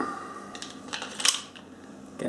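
Hands working at a small hard object: a sharp click at the start and a louder clack a little past a second in, with faint rattling between.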